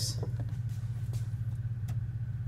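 A steady low hum, with a few faint clicks as the double-pole knife switch is handled.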